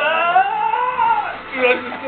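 A man singing one long, high note into a handheld microphone, his voice sliding upward and then falling away after about a second, with a strained, wailing quality. A brief, lower vocal sound comes near the end.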